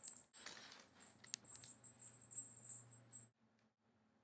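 A small bell jingling in a quick run of shakes and rattles as a cat plays in a bathtub, with one sharp click partway through; the jingling stops abruptly a little after three seconds.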